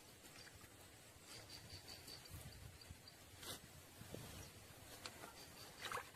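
Near silence: faint outdoor ambience by the water, with a few soft clicks, one about three and a half seconds in and another near the end.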